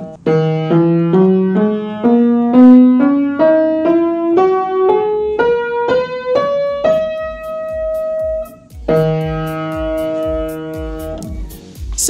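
Upright piano playing a two-octave scale, one note at a time, climbing evenly from the E below middle C to the second E above middle C: the span of a countertenor's range. The top E rings on, then the bottom and top E are struck together and held.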